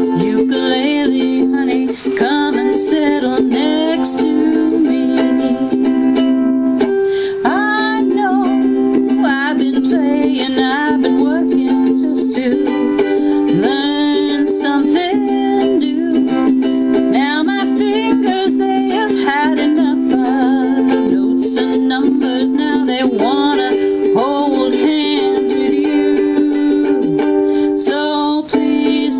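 A ukulele strummed in steady chords, with a woman singing along over it.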